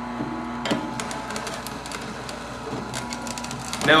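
Omega TWN30 twin-gear cold press juicer running, its slow motor humming steadily while the twin gears crush fresh ginger pushed down the feed chute. Crackling runs throughout, with a sharper crack about two-thirds of a second in.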